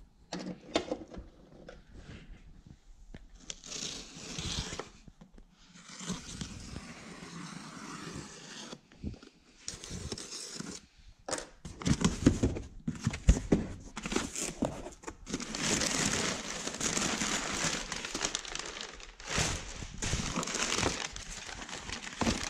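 A cardboard shipping box being opened by hand: tape and flaps are pulled, and packing material rustles and crinkles. There are a few sharp knocks about twelve seconds in, then steadier, louder crinkling over the last several seconds.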